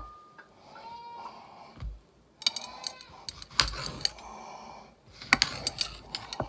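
Scattered light clicks and clinks of a knife and ceramic plates being handled on a kitchen counter, in a run about halfway and another cluster near the end.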